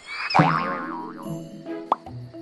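Short cartoon music sting for a title card. It opens about half a second in with a springy boing effect of wobbling pitch, then settles into a few held notes. A sharp click comes near the end.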